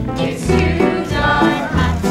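Cast singing a show tune over instrumental accompaniment with a steady bass line.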